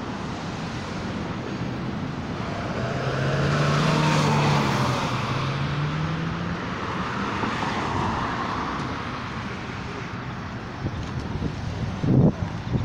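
Road traffic: a car passes close by, loudest about four seconds in, with a low engine hum that rises slightly in pitch, and another car passes a few seconds later.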